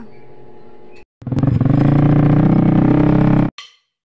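An engine running loud and close for about two seconds, starting a second in and cutting off suddenly.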